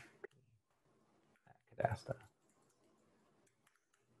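Faint computer keyboard typing: a single click just after the start and a short cluster of keystrokes about two seconds in, with near silence between.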